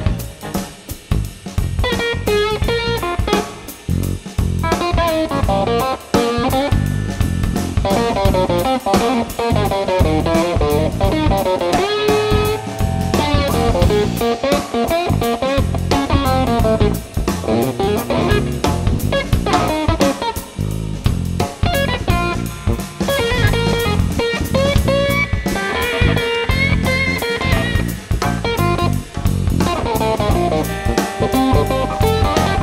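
Instrumental psychedelic funk-rock band playing: winding guitar melody lines over electric bass and a drum kit with snare and cymbals, continuing without a break.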